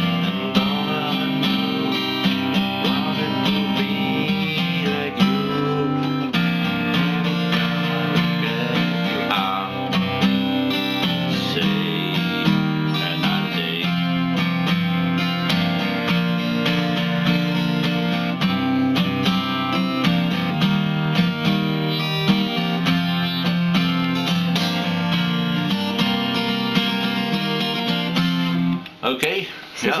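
Steel-string acoustic guitar with a capo, strumming chords continuously, stopping about a second before the end.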